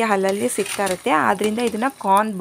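A woman talking in a steady stream of speech; no other sound stands out.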